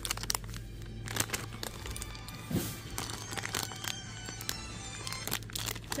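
Plastic sweet packets crinkling and rattling as they are handled, with music playing in the background from about halfway through.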